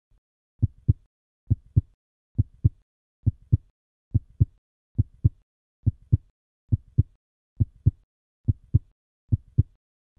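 A heartbeat-like lub-dub: pairs of low, short thumps about a quarter second apart, repeating steadily a little faster than once a second, with silence between the pairs.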